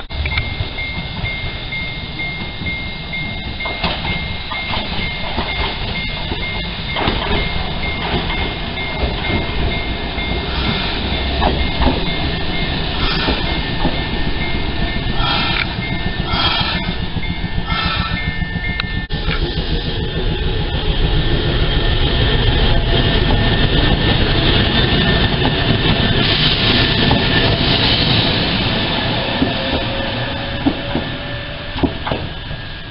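Fukui Railway electric train running along the rails at a station, a steady rumble of wheels and motors that grows louder in the second half. A thin steady high tone sounds until about two-thirds of the way through.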